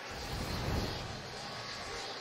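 Whoosh sound effect of a TV sports broadcast's logo wipe transition, swelling and fading in about a second, over a steady stadium crowd murmur.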